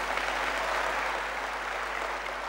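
Large audience applauding, a dense even clapping that swells just after the speaker stops and then slowly fades.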